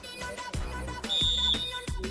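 Background music with a steady beat and a bass line. A high, steady electronic-sounding tone comes in about a second in and lasts under a second.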